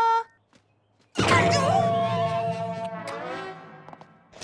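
A cartoon bird's failed attempt to sing: about a second in, a loud, rough blast that settles into one long held note and fades out. A sung note cuts off at the very start.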